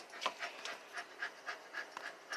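Miniature Australian shepherd panting steadily, about four breaths a second.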